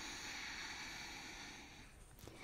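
A person's long, faint exhaled breath, a steady breathy hiss that fades away near the end, as the spine rounds in cat-cow.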